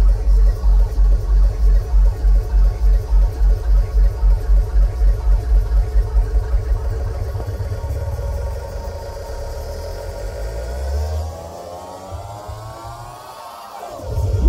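Hardstyle dance music played loud over a PA and picked up by a phone in the crowd. A heavy kick drum hits on every beat for the first half, then cuts out, and a synth sweep climbs steadily in pitch toward the end, building up to the next drop.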